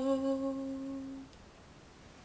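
A single sung note held steady in pitch as the closing note of the song, fading out just over a second in, then near silence.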